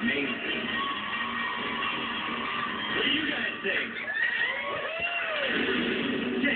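A television playing in the background: music with voices talking over it.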